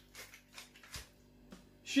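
A few faint, short clicks from a hand pepper mill being twisted to grind white pepper over a plate of pasta.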